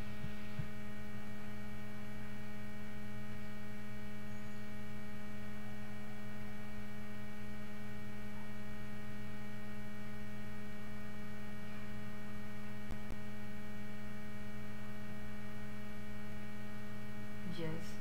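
Steady electrical mains hum picked up by the recording setup: a low, unchanging drone with a stack of higher buzzing overtones. A single faint tick sounds about 13 s in.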